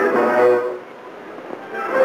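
Orchestral film score: a held brass chord breaks off well under a second in. After a brief lull the music starts again near the end.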